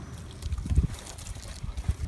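Liquid poured from a plastic gas can and splashing onto the wooden top of an upright piano, over a low rumble.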